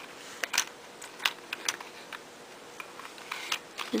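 Small, sharp clicks of dry bone tapping against bone, irregular and about eight in all, as a loose, unfused plate of a white-tailed deer skull is fitted back into place.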